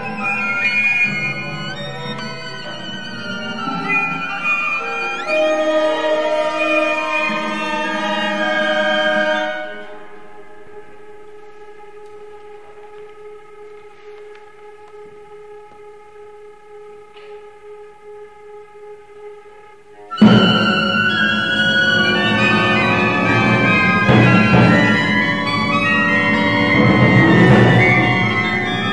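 Contemporary concert music for solo violin and a 15-instrument ensemble: a dense passage of many overlapping lines, then about ten seconds of quiet held tones, then a sudden loud entry of the whole ensemble about two-thirds of the way through.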